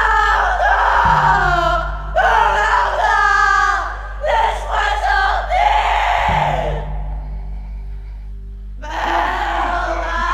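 A group of women's voices singing together in a loud, held chant over a steady low hum. The singing dies away about seven seconds in.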